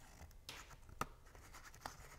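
Faint scratching and rustling of cardstock as glue is worked onto its tabs from a fine-tip glue bottle, with a sharp click about a second in.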